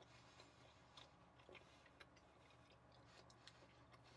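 Near silence, with a few faint, scattered mouth clicks from someone chewing bubble gum.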